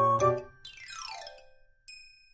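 Playful background music. A pitched note opens, then a falling glide of tones and a few high chime-like plinks near the end.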